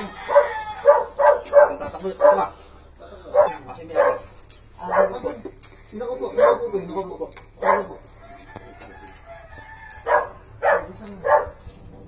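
Rural yard sounds: roosters crowing and dogs barking in many short, loud calls, mixed with men's voices. The calls are thickest in the first few seconds and thin out after the middle.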